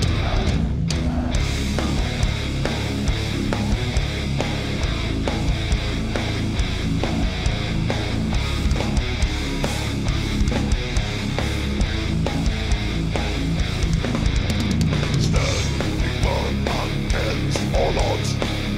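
Heavy metal band playing live on a festival stage: distorted electric guitars over a steady, dense pounding of drums.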